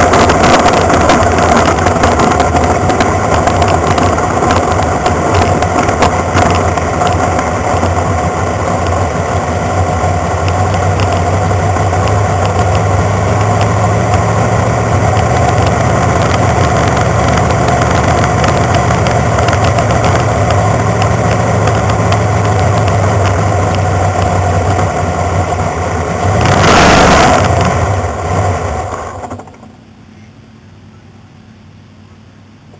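Sprint car's V8 engine heard close up from the car, running steadily at low speed. It swells louder briefly near the end, then is switched off and cuts out.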